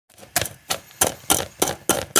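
A metal spoon stirring dry grains in a stainless steel pot. The grains rasp and the metal scrapes in even strokes, about three a second.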